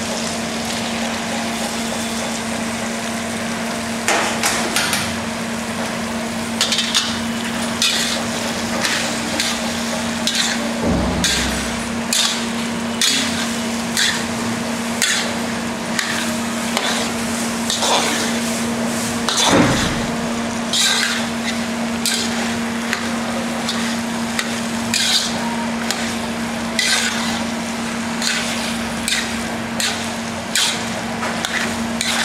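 Metal spatula scraping and knocking against a steel kadai, roughly once a second, as boiled potato pieces are stirred through a sizzling tomato masala. There is a dull thump partway through as the potatoes go in, over a steady low hum.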